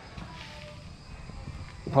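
Faint outdoor background noise in a pause between speech: a low rumble under a faint, steady high-pitched hum, with talk starting again at the very end.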